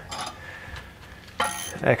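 Hand tools clinking as a wrench is fitted onto the end of a ratchet handle for extra leverage, with one short ringing metal clink about one and a half seconds in.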